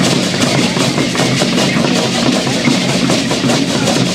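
Large hand-held drums beaten in a steady rhythm, mixed with the dense, continuous rattling of cocoon leg rattles and gourd hand rattles on dancing dancers.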